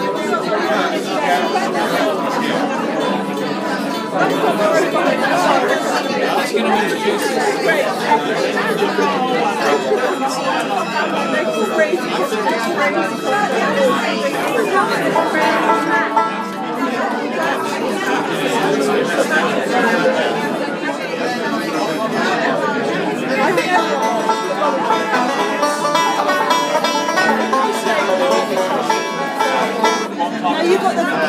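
Banjo being picked in bluegrass style with acoustic string-band backing, over steady crowd chatter.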